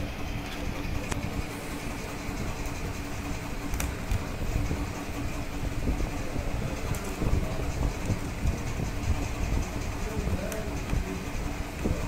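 Steady low rumble and hum of background noise, with a few faint clicks.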